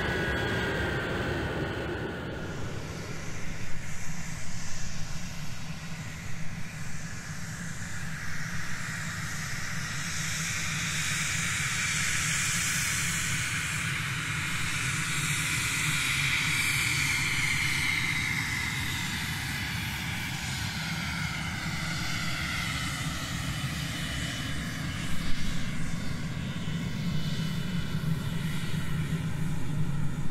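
Fixed-wing aircraft engine running steadily as the plane flies past, its tone slowly sweeping in pitch over many seconds.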